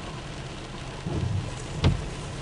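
Steady rain falling, heard from inside a car, with a brief low rumble about a second in and a single sharp knock near the end.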